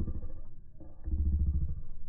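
Slowed-down, pitch-lowered soundtrack of slow-motion footage: a deep, drawn-out rumble with a low hum. It swells once at the start and again, louder, from about a second in until near the end.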